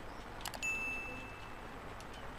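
Two quick clicks, then a single bright bell ding that rings on and fades over about a second: the notification-bell sound effect of an animated subscribe-button overlay.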